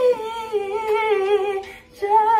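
A woman humming one long wordless note. It dips slightly at the start, then holds with a slight waver and fades shortly before the end.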